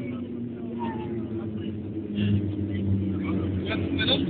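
Engine and rolling noise of a Boeing 737-700 heard from inside the cabin over the wing during the landing rollout: a steady hum with low droning tones that grows louder about two seconds in.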